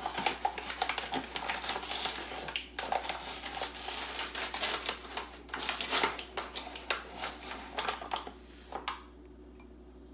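Paper sugar bag rustling and crinkling as it is opened and a measuring cup is scooped into the granulated sugar. The crackling runs in quick bursts with a short pause near the three-second mark and stops about nine seconds in.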